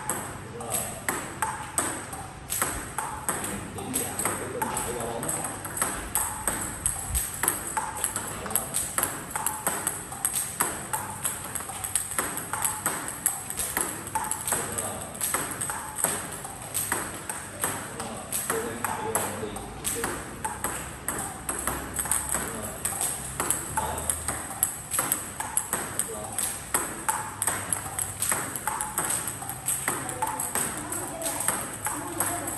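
Table tennis multiball practice: celluloid-type ping-pong balls hit with rubber-faced paddles and bouncing on the table, a quick, steady run of sharp clicks, a few each second.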